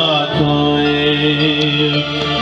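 Male vocal group singing through microphones and a PA, sliding down about a third of a second in onto one long chord held in harmony, over an electronic keyboard accompaniment.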